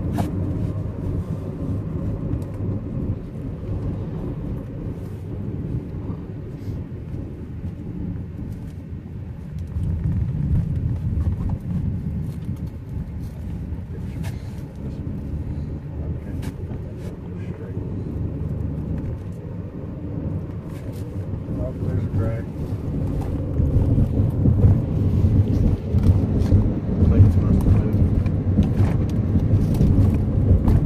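Road and wind noise heard inside a moving Honda car: a steady low rumble that grows louder over the last several seconds.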